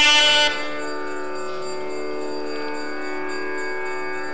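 Tamil temple ensemble music: thavil drum strokes stop about half a second in, leaving a steady held drone tone with no rhythm under it.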